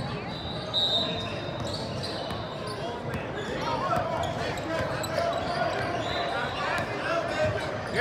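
A basketball bouncing on a hardwood gym floor, with the voices of players and spectators in the background, echoing in a large gym.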